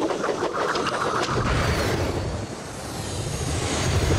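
Sound effect of a propeller airship flying past: a loud rushing, windy noise with a deep rumble that swells, dips and swells again.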